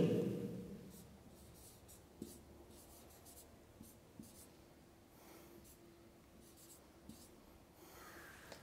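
Felt-tip marker writing on a whiteboard: faint, intermittent strokes, with a few light taps of the pen tip.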